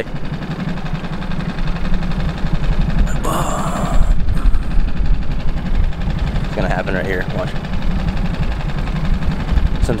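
Outboard motor running steadily at low trolling speed, with wind on the microphone and a brief rush of noise about three seconds in.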